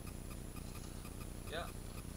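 Clockwork of a blue wind-up toy robot running as it walks, a light, even ticking of about four to five clicks a second. The robot is working.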